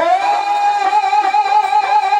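Punjabi dhadi music: a singer holds one long, slightly wavering note together with a bowed sarangi.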